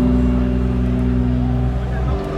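Live band with violin, saxophone and guitars holding a sustained chord over a low bass note, the sound fading slightly near the end before the next chord.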